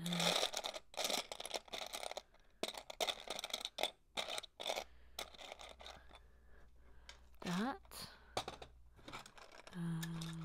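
Loose LEGO plastic pieces clattering and scraping as a hand sifts through them in search of one part. The clicks come thick in the first half and thin out later. About two-thirds of the way through, a person gives a short rising hum.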